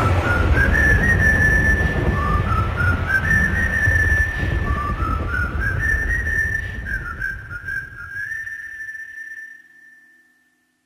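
Whistled melody closing a song: short phrases that step upward and settle on a held note, over a low rumbling bass. The track fades out to silence near the end.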